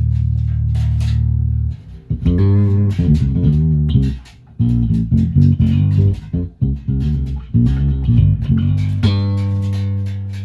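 Ernie Ball Music Man StingRay 5HH five-string electric bass, plucked through an amp. A long held low note gives way, about two seconds in, to a run of notes with brief pauses. About nine seconds in, a last note is left ringing.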